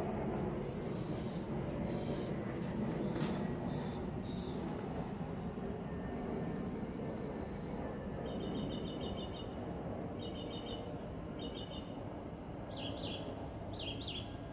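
Small birds chirping in short, rapid trills of high notes, repeated in groups about a second long, with a couple of falling calls near the end, over a steady outdoor background noise.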